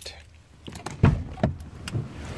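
A few soft knocks and clicks inside a pickup truck's cab, the two loudest about a second in, over a low steady hum.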